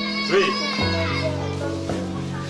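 Background music with held notes, a low bass note coming in about a second in, under people's voices and children's chatter.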